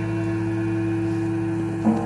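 A band's last chord held and ringing through the amplifiers at an even level, with a steady electrical hum. A brief knock sounds just before the end.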